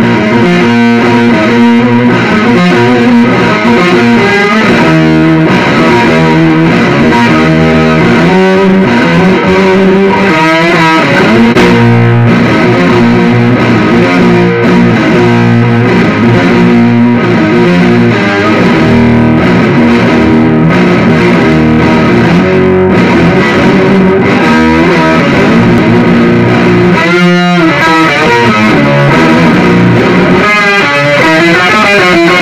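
Electric guitar played through a Blackstar ID:CORE 100 combo amp with its octave modulation effect on, which adds lower and higher octaves to each note. The playing is continuous and loud, with ringing notes and chords.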